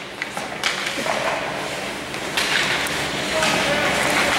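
Ice hockey rink ambience: spectators' voices and calls echoing in the arena, with a few light clacks of sticks and puck in the first second. The crowd noise swells a little about two and a half seconds in.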